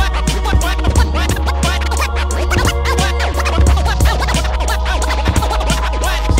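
Vinyl scratching on a Technics turntable: a sample dragged rapidly back and forth and chopped into short cuts with the mixer's crossfader, over a hip-hop beat with a steady bass line playing from the other deck.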